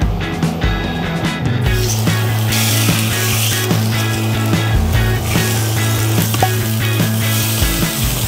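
Chicken thigh fillets sizzling as they fry in hot oil in a frying pan, starting about two seconds in and stopping just before the end, over background music.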